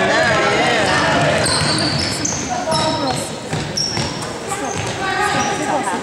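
Basketball dribbled on a hardwood gym floor, with sneakers squeaking in short high squeals as players run the court. Voices shout and call out in the hall's echo.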